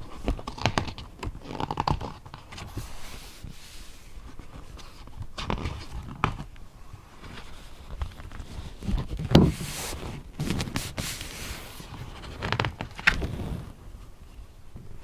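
Stiff glossy pages of a hardcover lift-the-flap picture book being turned and handled: a series of rustling page sweeps with soft knocks and thumps, the loudest about nine to eleven seconds in.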